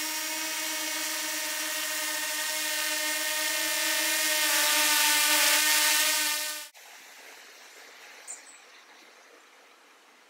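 Small quadcopter drone hovering close by, its propellers giving a steady high whine that grows louder as it nears. About two-thirds of the way in the whine cuts off suddenly as the motors stop.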